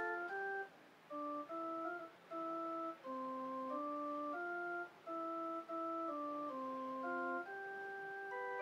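Organ playing a slow hymn melody: a line of held notes that start and stop cleanly, with short breaks between phrases, swelling into fuller chords near the end.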